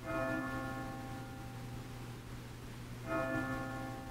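A bell struck twice, about three seconds apart, each stroke ringing out and fading over about a second, over a steady low hum.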